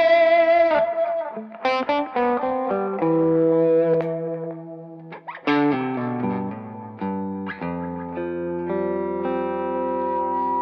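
Electric guitars played through a wet-dry-wet amp rig with overdrive and wet effects. A held, wavering chord opens, followed by a run of picked notes, then longer sustained notes near the end.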